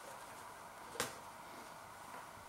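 A single sharp tap about a second in, as a cardboard food box is put down on a kitchen worktop, over a faint steady hum.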